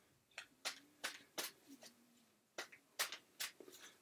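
Tarot cards being handled on a table, a string of soft, irregular clicks and taps.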